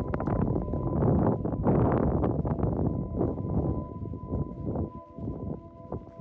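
Wind buffeting the microphone in uneven gusts, easing after about four seconds. Faint steady music tones sound underneath.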